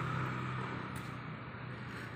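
Steady outdoor background noise with a low hum, fading slightly over the first second.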